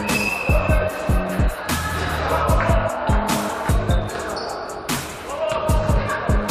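Background music with a beat and a bass line.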